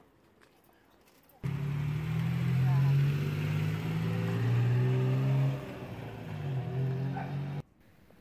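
Engine of an orange tuk-tuk running with a steady low hum, which starts about a second and a half in and drops in level near the end as the tuk-tuk moves off.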